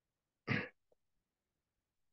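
A person briefly clearing their throat once, about half a second in, over a video-call line that is otherwise silent.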